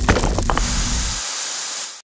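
Sound effects of an animated logo sting: a deep rumble with a few sharp hits, then a bright, steady hiss that carries on after the rumble drops away a little past one second.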